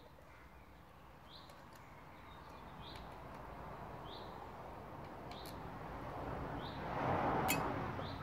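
A bird calling with a short chirp repeated about every second and a half. A few light clicks sound over a soft rushing noise that swells near the end.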